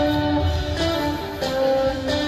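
Instrumental passage of a rock song: a guitar playing a melody of held notes over a steady beat.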